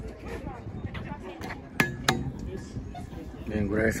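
Voices in the background, with two sharp clicks about two seconds in, half a second or less apart; a man's voice begins close by near the end.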